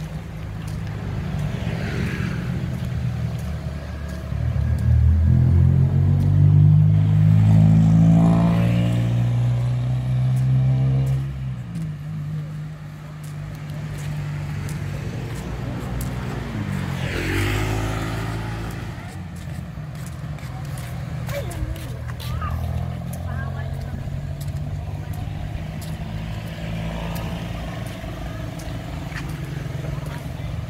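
Road traffic: motor vehicles driving past close by, their engines swelling and fading. The loudest pass comes about five to eleven seconds in, and another with a falling pitch a little past the middle.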